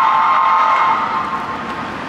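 A vehicle horn sounding one long blast, a steady chord of several notes that fades out after about a second and a half.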